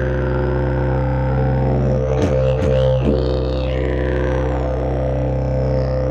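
Elm-wood evoludidg didgeridoo playing a continuous low drone, with the overtones swept up and down by the player's mouth shapes. A few quick sharp accents break in about two to three seconds in.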